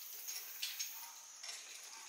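A few light, sharp clicks and knocks, irregularly spaced, over a steady faint high hiss.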